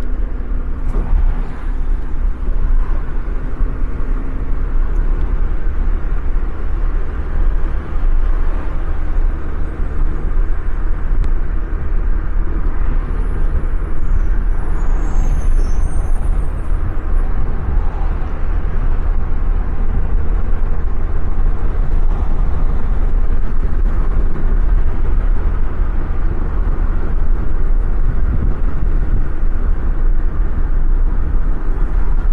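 Steady road noise inside a moving car: low rumble of tyres and engine. A few faint high chirps come about halfway through.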